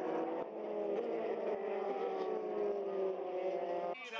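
Formula 3 race car engines running at high revs as two cars go through a corner together, the engine note falling slowly in pitch.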